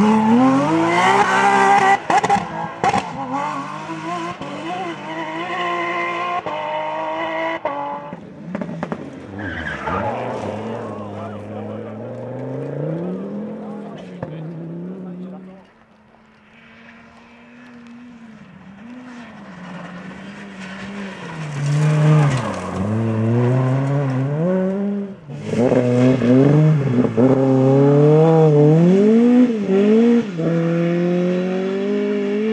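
Rally car engines at full throttle, climbing in pitch through upshifts and dropping back as the cars pass, in a run of short cuts; the first is a Porsche 911 GT3's flat-six. About halfway it goes briefly faint, then grows louder as the next car closes in.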